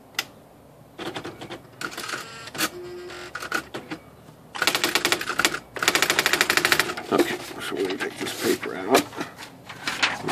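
Brother Professional Model electronic typewriter running its motor-driven mechanism: scattered clicks, then two quick runs of rapid, even ticking about halfway through as the machine moves the paper.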